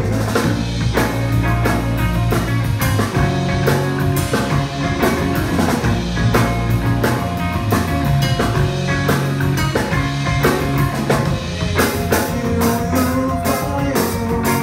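Live rock band playing: drum kit, electric bass and two electric guitars.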